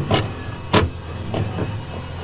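Sound effect of a VCR loading and playing a videotape: a steady motor whir with three mechanical clunks about half a second apart, the loudest near the middle.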